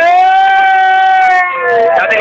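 A man's long, drawn-out cheering shout held on one high note, dropping in pitch about a second and a half in.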